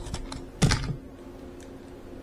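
A few light clicks, then a louder knock about two-thirds of a second in, as a white foam model airplane wing is handled and set against a hard marble tabletop.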